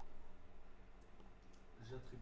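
A few faint computer mouse clicks over a low steady hum, with a voice starting up near the end.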